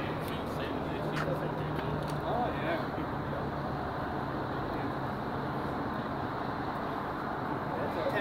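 Steady low hum of an idling vehicle engine, with faint, indistinct voices talking in the background.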